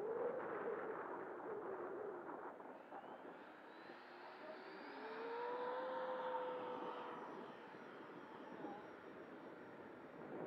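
Electric ducted-fan whine of an FMS 80mm Futura RC jet flying by at high speed, rising in pitch about three seconds in, loudest around the middle, then fading.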